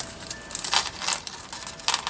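A small clear plastic bag crinkling in a few short rustles as it is handled.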